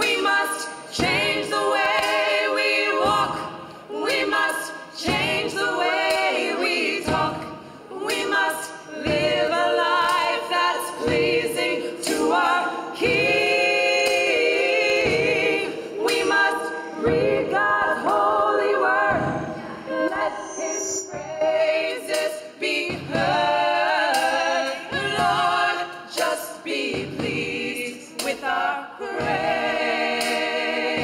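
A small gospel choir singing a cappella in close harmony, in sung phrases with short breaks between them.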